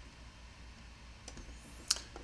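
Faint room tone with a steady low hum, and one short click near the end.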